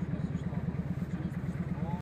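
A vehicle engine idling close by, heard as a rapid, even low throb, with people's voices faintly over it and one voice rising near the end.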